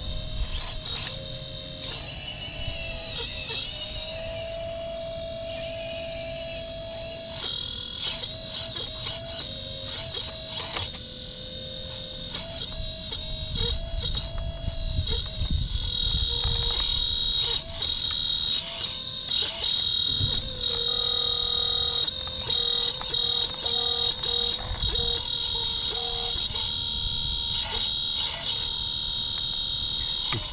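1/12-scale hydraulic RC excavator (Caterpillar 339D model) working: the electric hydraulic pump whines steadily, its pitch stepping up and down as the arm and bucket are moved, with clicks and scraping as the bucket digs into rooty soil. It gets louder about halfway through.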